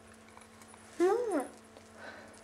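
Mostly speech: an adult's high, sing-song voice drawing out "Who's…" with a rising then falling pitch about a second in, over a faint steady hum.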